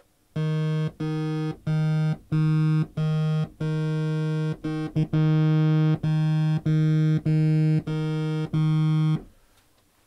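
Yamaha TG77 FM tone generator playing a sawtooth-like tone from two operators, one low note repeated about a dozen times at the same pitch. With phase sync turned off on operator 2, the two waves start at different points in their cycles, so each note comes out at a slightly different loudness and tone.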